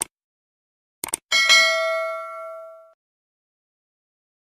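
Subscribe-animation sound effect: a mouse click right at the start, a quick double click about a second in, then a bright bell ding that rings on for about a second and a half and fades away.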